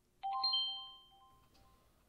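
A single bright bell-like chime rings out about a quarter second in and fades away over roughly a second. It is a magic sound effect marking the genie's appearance from the lamp.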